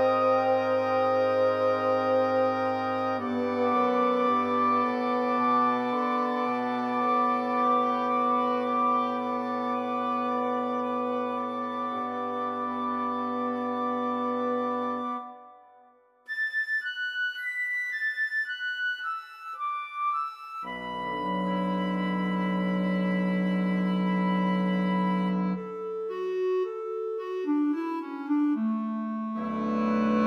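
Woodwind quintet of flute, oboe, clarinet, horn and bassoon playing a slow, soft passage: sustained chords under oboe and clarinet figures, cut off for a brief silence about halfway. A solo flute then plays a run of short high notes stepping downward, the ensemble comes back in with a soft held chord, and a solo clarinet line moves up and down near the end.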